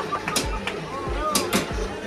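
Background music with a steady beat of low thumps about every 0.6 seconds, with a few sharp clicks and some voices over it.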